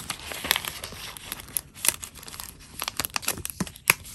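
Thin printed paper crinkling and rustling as hands unfold and handle small folded paper pockets, a dense run of crackles with a sharper crack near the end.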